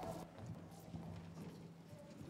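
Light, irregular footsteps of hard-soled shoes on a wooden stage floor as children walk across it, over a faint low steady hum.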